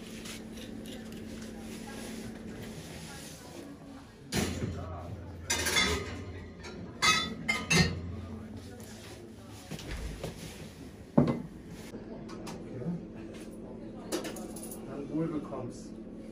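Wine glasses and tableware clinking and knocking on a wooden barrel top: a handful of sharp clinks, most of them between about four and eight seconds in, and one more near eleven seconds, over a steady room hum.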